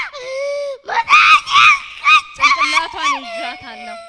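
A young girl screaming and crying out into a handheld microphone, amplified: a long held cry at the start, then a run of short, very high-pitched cries that rise and fall.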